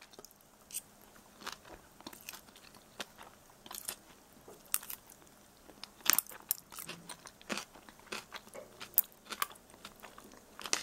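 A person chewing and biting through a crunchy mouthful of ramen noodles with dill pickle slices and shredded carrot. Irregular crisp crunches come at uneven intervals, clustered a little after the middle.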